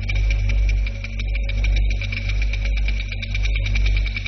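Documentary soundtrack bed: a deep, continuous low drone under a steady high tone, with a rapid run of clicking ticks throughout.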